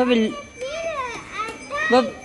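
Young children's voices: three short, high-pitched sing-song calls whose pitch rises and falls, with no clear words.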